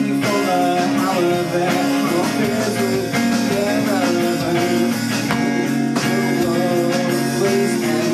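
Live small-band performance of a pop ballad: acoustic guitar playing chords under a sung melody, with a drum kit behind.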